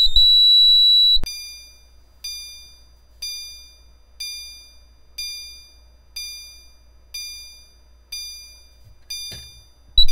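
A loud, steady high-pitched beep lasting about a second and a half. Then a System Sensor CHSWL chime strobe sounds its 'One Second Low' tone: a single soft chime strike about once a second, each ringing briefly and fading, the low-volume setting of the one-second chime. A sharp click comes at the very end.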